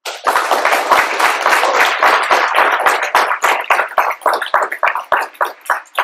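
Audience applauding in a hall. The clapping is dense at first and thins to scattered separate claps near the end.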